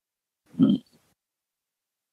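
A woman's single brief, low 'hmm' about half a second in.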